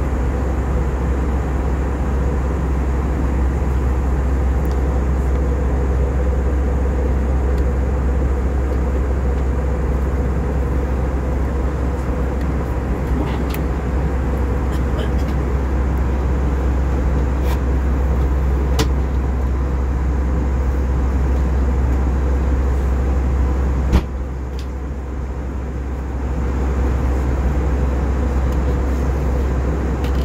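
Steady cabin noise inside an Airbus A320 in flight: a deep, even rumble of engines and airflow with a steady hum over it. Near the end a sharp click, after which the noise is a little quieter for about two seconds.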